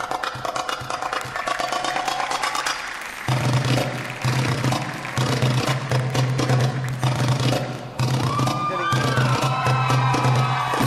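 Backing music for a stage act, with a steady beat and hand-percussion sounds. A heavy bass comes in about three seconds in.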